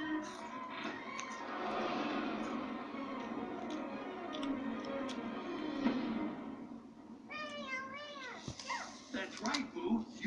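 Film soundtrack playing from a device: music and busy background sound, then a single high, wavering cry about seven seconds in that could pass for a meow.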